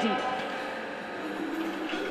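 Sustained low instrumental drone holding steady tones, with a slight wavering low down, as the spoken voice fades out at the start.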